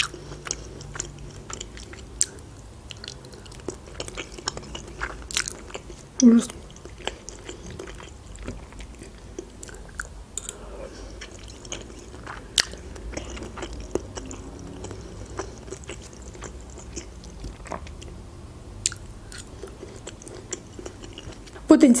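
Close-miked chewing of boiled pelmeni (Russian dumplings) with cheese sauce: soft, wet mouth sounds with many short sharp clicks and smacks. A brief hum from the voice comes about six seconds in.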